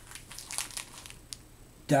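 Bundled hank of nylon 550 paracord rustling in the hands as it is picked up and turned: light scratchy rustles over the first second or so, busiest about half a second in, with one sharp tick after them.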